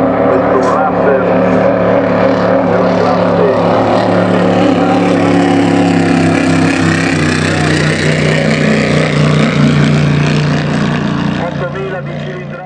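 BPM 8000 cc V8 engine of a Celli three-point racing hydroplane running hard at speed on the water. It holds a steady low note whose pitch shifts slightly through the middle.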